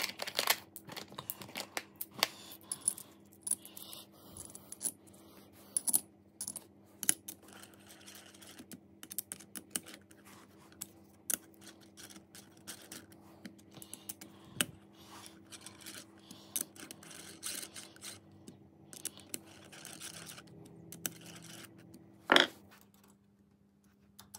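Scattered small metallic clicks and clinks of stainless steel cap screws and a T-handle hex key against a steel collet chuck mount as the screws are fitted and turned in. A louder single clunk comes near the end, with a faint steady hum underneath.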